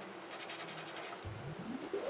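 A makeup brush's bristles being rubbed lightly over the ridged pink glove, a faint scrubbing. About a second in, electronic background music starts to fade in with a rising swell.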